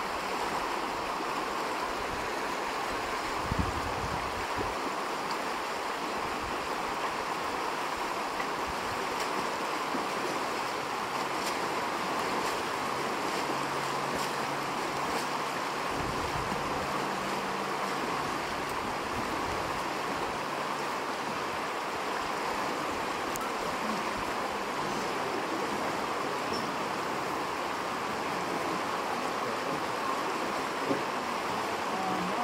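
Steady rushing of a shallow, fast river running over rocks.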